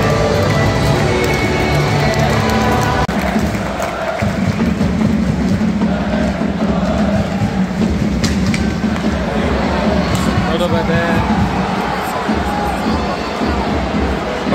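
Ice hockey arena sound: music over the PA for about the first three seconds, cut off suddenly, then loud crowd noise from the stands for the rest.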